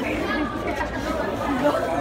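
Indistinct chatter: several people talking at once.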